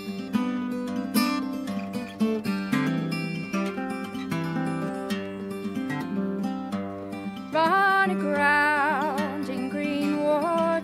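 A plucked string instrument playing the introduction to a folk song, with a sustained, wavering melody line coming in about seven and a half seconds in.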